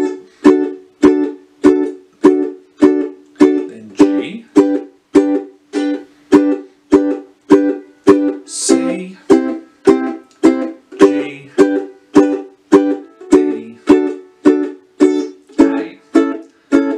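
Ukulele chords strummed in a staccato pattern, each strum cut short by the strumming hand muting the strings, in a steady rhythm of just under two strums a second. The chords work through the verse progression D, G, C, G, D, A.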